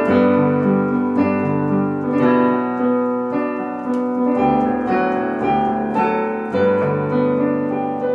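Stage keyboard playing slow piano chords in an instrumental passage, a new chord or note struck about once a second and each fading before the next.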